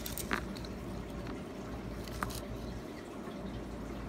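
Coins handled by hand on a padded mat: a couple of faint clicks about two seconds apart as coins are slid apart, over a low steady hum.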